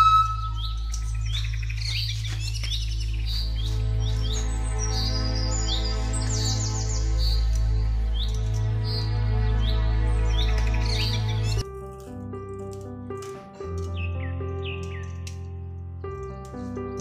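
Instrumental background music with sustained tones and a low drone, mixed with many quick bird chirps. About twelve seconds in the music cuts abruptly to a quieter passage, and the chirps come back shortly after.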